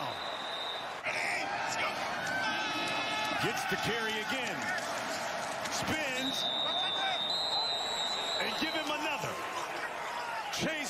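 Field sound of a college football game: players shouting and pads thudding as a goal-line play piles up. About six seconds in, a referee's whistle blows a long steady blast to end the play, and a second whistle joins it near the middle of the blast.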